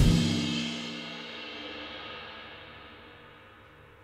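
Drum kit's final stroke ending a shuffle groove, with the cymbals and drums left ringing and fading steadily away over about four seconds.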